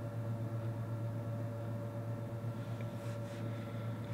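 Steady low electrical hum from the energised toroidal mains transformer of a bench power supply running with no load.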